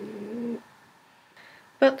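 A woman's voice holding a low, steady hum or drawn-out vowel for about half a second, then a quiet pause before she speaks again near the end.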